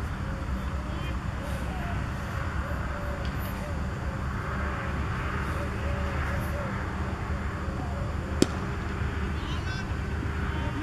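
A single sharp crack about eight seconds in, a cricket bat striking the ball, over a steady low outdoor rumble.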